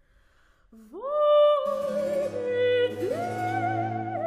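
Soprano singing an operatic aria. After about a second of near silence she enters on a held note that swells in, is joined by lower accompaniment, then slides up to a higher note held with vibrato.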